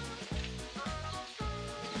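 Crinkling of a small plastic wrapper being torn open by hand, over background music with a steady, repeating bass line.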